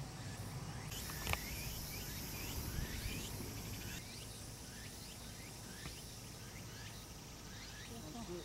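Birds chirping in short rising calls, repeated many times over a faint outdoor background, with a single sharp click about a second in.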